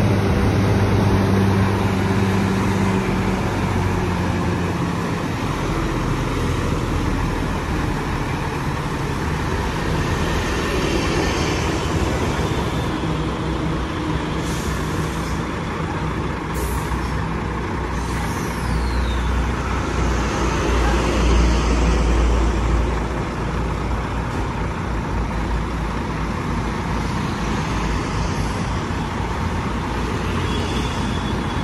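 Heavy diesel truck engine running at crawling speed. Short sharp hisses of air come from the air brakes around the middle, and a deep rumble swells a few seconds later.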